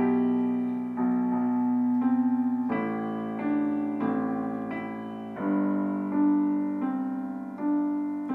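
Digital piano played slowly with both hands: a held left-hand bass under a simple right-hand melody, with a new note or chord struck about once a second.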